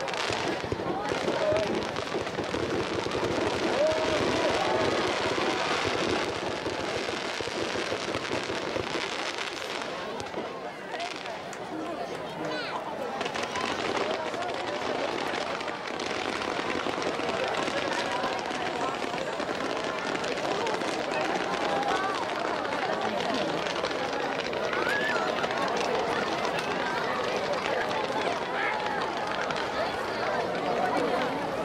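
A crowd of spectators chattering while fireworks burn, with crackles and pops from the fireworks, most noticeable near the start and around ten to thirteen seconds in.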